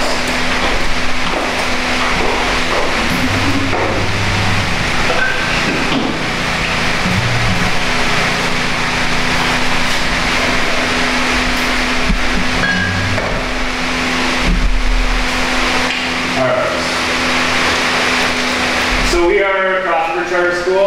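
Indistinct chatter of many people in a room, no single voice clear, with a steady low hum underneath.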